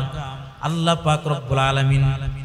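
A man's voice intoning in the sing-song, chant-like style of a sermon, drawing out long held notes, with a short pause about half a second in.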